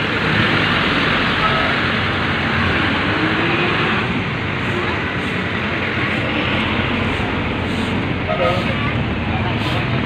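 Steady noise of busy road traffic, cars and jeepneys driving past close by.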